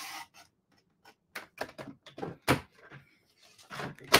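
Paper trimmer's blade carriage sliding along its rail through cardstock, a brief scraping swish at the start. Then scattered light clicks and taps of the cardstock and trimmer being handled, the loudest about two and a half seconds in.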